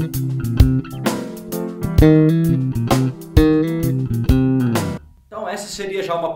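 Fender Jazz Bass electric bass playing a groove over a C7 chord, with a play-along backing track that has sharp percussive hits. The music stops about five seconds in, and a man starts talking.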